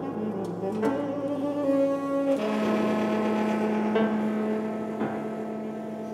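Saxophone and Kawai grand piano playing classical chamber music together. A few quick note changes come first, then, about two seconds in, the saxophone holds one long steady note over the piano.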